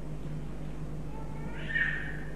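A brief high-pitched squeal or cry near the end, over a steady low electrical hum on the recording.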